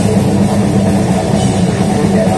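Brutal death metal band playing live through a festival PA: heavily distorted electric guitars and bass over fast, dense drumming, loud and continuous.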